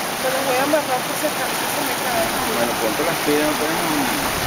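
Shallow, rocky mountain river rushing and splashing over stones in small rapids: a steady, even rush of water.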